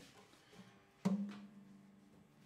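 Strings of a Gretsch G9220 resonator guitar ringing after a sharp knock about a second in, as the guitar is handled, the note fading away.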